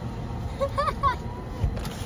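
Car idling, heard from inside the cabin as a low steady rumble, with a short high voice about halfway through.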